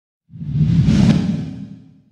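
A whoosh sound effect for a logo intro: a deep rumble with a rushing hiss that swells up, peaks about a second in and fades away.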